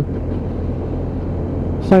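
BMW F800 motorcycle's parallel-twin engine running steadily at a cruise, with wind and road noise on the camera microphone.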